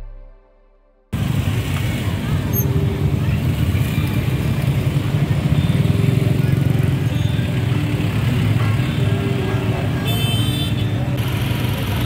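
The tail of an intro jingle fades out in the first second. Then steady street noise begins: cars and motorcycles passing, with a crowd of people talking. A brief high-pitched tone sounds about ten seconds in.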